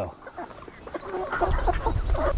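Chickens clucking and chirping as a flock pecks at greens, short calls scattered through, with a low rumble rising under them near the end.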